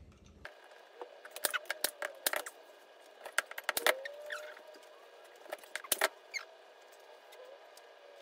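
Upholstery fabric and a padded chair-seat board being handled, pulled and folded: rustling with a string of sharp little clicks, densest in the middle, and a faint squeak near the middle.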